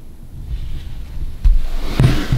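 Handling noise as the camera is picked up and turned round: a low rumble, a single thump about one and a half seconds in, then rustling.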